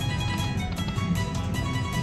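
Slot machine bonus-round music from the Autumn Moon game, a run of quick, steady notes playing while the open reel positions spin during a hold-and-spin free spin.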